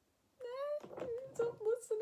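A woman's voice laughing and talking after a brief silence near the start.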